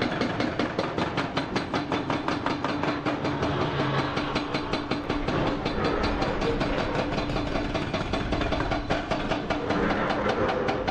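Hydraulic rock breaker on a Hyundai HX480L excavator hammering rock: a fast, steady run of sharp metallic blows, many a second, over the steady drone of the excavator's diesel engine.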